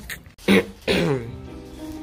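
Two short vocal sounds, falling in pitch and like a throat clearing or cough, followed by background music with steady held notes.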